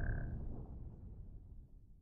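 The low rumbling tail of a boom sound effect in a logo animation, dying away over about a second and a half, with a brief high tone at the very start.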